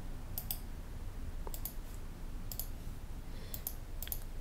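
Computer mouse clicking: four quick double clicks, each a button press and release, about a second apart, over a faint room hum.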